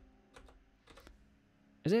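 A few faint, short keystrokes on a computer keyboard.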